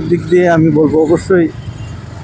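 A man talking for the first second and a half over the steady low running of a motorcycle engine and street traffic. The engine and road noise carry on alone, quieter, near the end.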